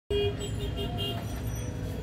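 Steady low background rumble with faint wavering tones above it, the kind of sound road traffic makes, cutting in abruptly as the recording starts.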